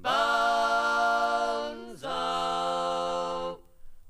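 Unaccompanied English folk singing in close harmony by two men and a woman. They hold two long notes, the first about two seconds and the second about a second and a half, and then break briefly for breath near the end.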